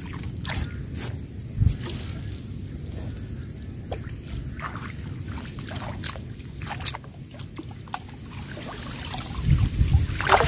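Water sloshing and splashing as a net fish trap is handled and lifted in waist-deep water, with scattered small splashes and drips. The splashing builds near the end into a louder burst.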